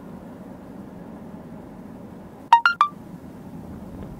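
Steady low road and engine hum inside a moving car, broken about two and a half seconds in by three quick electronic beeps at different pitches, the middle one highest.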